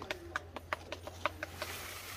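A string of light, irregular clicks and taps, about ten in two seconds, over a faint steady low hum.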